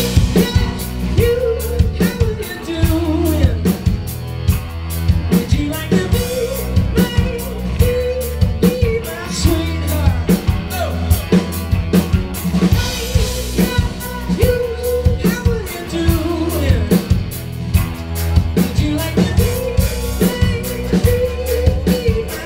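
Rock band playing live: a drum kit keeping a steady beat under bass and electric guitars.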